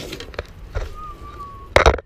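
Knocks and clatter of hard objects being handled on a concrete floor: a few light knocks, then a loud knock just before the end.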